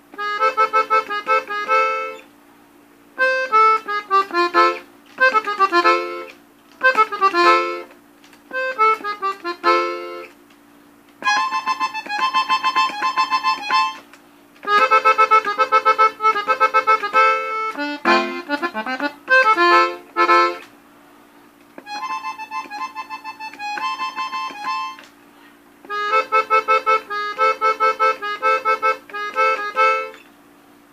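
Three-row diatonic button accordion tuned in F playing a corrido melody in short phrases of quick notes, stopping briefly between phrases.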